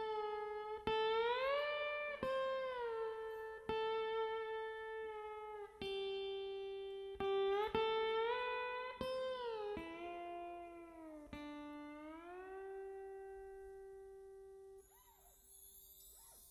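A lap steel guitar played solo, slow and melodic: single plucked notes ring out, and many glide smoothly up or down in pitch as the bar slides. The last note fades away near the end.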